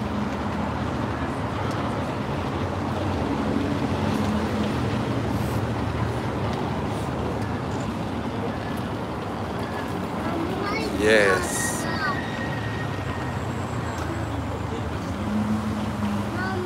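Steady room noise with a low hum, typical of air conditioning and general bustle in a large hall. About eleven seconds in comes one short, high, squeaky voice-like sound.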